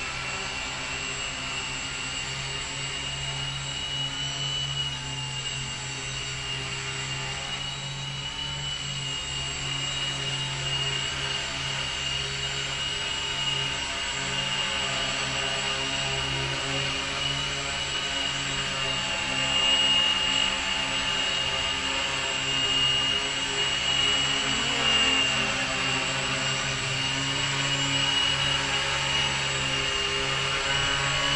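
Electric motors and propellers of a small home-built MultiWii multirotor hovering low: a steady high whine over a buzzing hum, swelling slightly in pitch and loudness now and then as the flight controller holds it in place.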